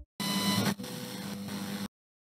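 Electronic static-like noise burst, a glitch transition sound effect. It is louder for about the first half second, then settles into a steadier hiss and cuts off suddenly near the end.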